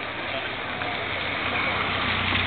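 Car engines idling at a drag-race start line, a low steady engine hum growing louder near the end, under crowd chatter.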